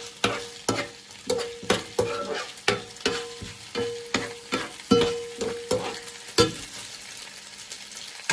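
Metal tongs tossing spaghetti in a non-stick frying pan, knocking against the pan about twice a second with a short ring after many of the knocks, over a steady sizzle. The knocking stops about six and a half seconds in, leaving only the sizzle.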